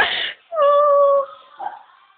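A sharp, loud burst, then a high-pitched vocal note held for under a second that dips slightly in pitch as it ends.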